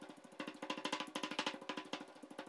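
Stone pestle pounding in a granite mortar, a quick run of dull knocks several times a second as dried chillies and lemongrass are crushed coarsely for curry paste. Background music plays underneath.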